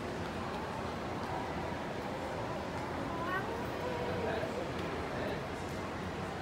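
A toddler's wordless vocalizing: short, sliding, whiny sounds, one rising higher about halfway through, over the steady background noise of a shopping-mall hall.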